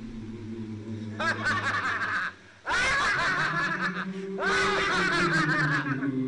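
A person laughing in three runs of quick, repeated bursts over a steady low musical drone, the runs starting and stopping abruptly.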